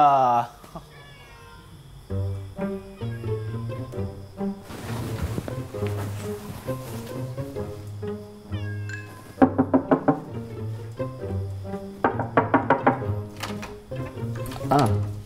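Background music with a steady, rhythmic bass line, and a cat meowing a few times over it.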